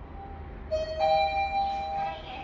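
Mitsubishi elevator arrival chime: two electronic chime tones, the second a little higher and coming about a third of a second after the first, both ringing on. It signals that the car has arrived at its floor.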